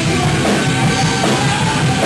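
A rock band playing loud and fast: electric guitars and bass guitar over a drum kit.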